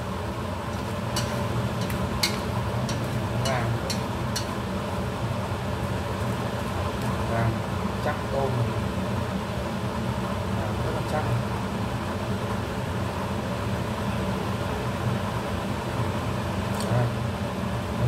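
Whole shrimp frying in hot oil in a stainless steel pan, a steady sizzle as they firm up and turn golden, with a steady hum beneath. A few sharp clicks come in the first few seconds.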